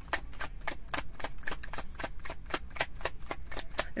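A deck of tarot cards being shuffled by hand: a quick, even run of soft card flicks, about seven a second.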